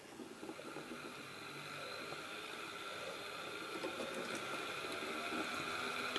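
Small DC motor driving a small DC generator, a faint steady whine with several high tones over a light hiss, slowly growing louder as the set spins up.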